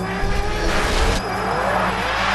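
Soundtrack of a sports commercial: music with sliding, rising tones that sound somewhat like an engine revving, over a steady low bass, changing about a second in.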